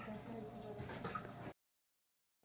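Quiet background with a few faint steady tones. The sound cuts off to dead silence about one and a half seconds in.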